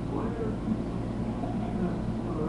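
Faint, indistinct voices over a steady low electrical hum.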